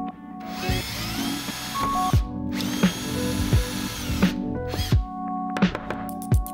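Bosch cordless drill running in two bursts of about two seconds each, speeding up at the start of each and winding down at the end, over background music with a steady beat.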